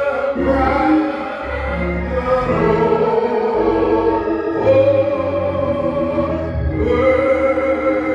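Gospel praise song sung into a microphone, the voice holding long notes over sustained keyboard chords and bass notes that change every second or two.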